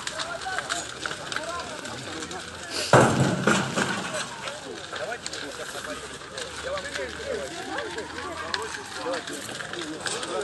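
Voices of people calling out in the background amid outdoor noise, with a sudden loud knock about three seconds in.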